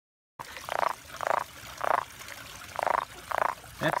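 Leopard frog held in the hand croaking: six short, rattling croaks, loosely in pairs, about half a second to a second apart.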